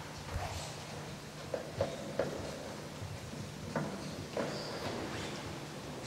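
Quiet room tone with a faint low hum, broken by scattered small knocks, clicks and rustles.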